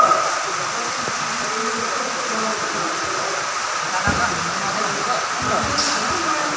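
Steady rushing background noise of an indoor futsal hall, with faint distant voices of players and spectators. Two dull thumps come about four and five and a half seconds in.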